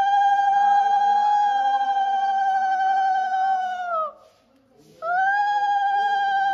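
Conch shell (shankha) blown in long held notes: one steady note of about four seconds that scoops up at the start and sags away at the end, a brief break, then a second blast starting about five seconds in.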